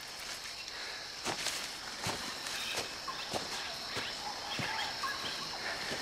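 Footsteps on jungle undergrowth, a handful of irregular steps with leaf rustling, over a steady high-pitched hum of insects.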